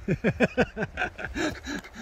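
A man laughing: a quick run of short "ha" sounds, each dropping in pitch, about six a second.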